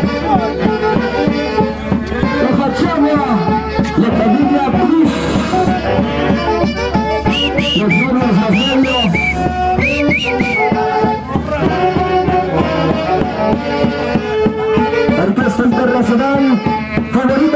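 Lively Andean folk band music: several melodic instruments over a steady beat, with a run of short high swooping notes about halfway through.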